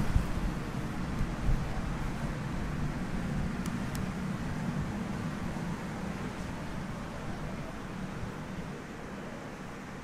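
Steady low hum and hiss of indoor room noise, with a handling bump at the start and two faint clicks about four seconds in. The hum eases off slightly near the end.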